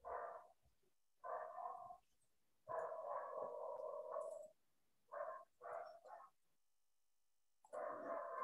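A dog barking and whining faintly in short bursts, one call held for over a second, heard over a video call.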